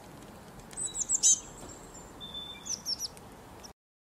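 Small songbirds chirping: a quick run of high chirps about a second in and another near three seconds, over a faint hiss, cut off suddenly just before the end.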